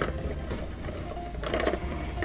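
Adhesive transfer (ATG) tape gun drawn along a cardstock panel, its tape-feed mechanism running steadily as it lays strips of double-sided adhesive, with a click as the stroke begins.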